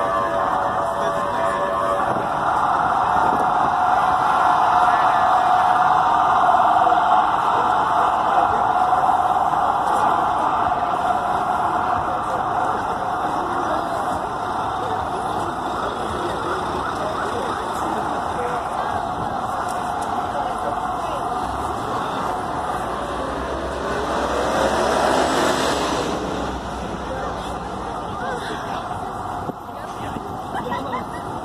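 Busy city sidewalk: steady chatter of a dense crowd of passing pedestrians over street traffic. About three-quarters of the way through, a vehicle passes louder, with a low rumble, then fades.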